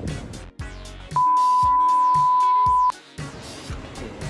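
A single steady high-pitched electronic bleep lasting just under two seconds, starting about a second in, loud over background music.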